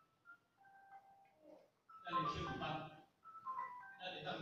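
A person singing, with a few short held notes in the first half, then fuller sung phrases from about two seconds in.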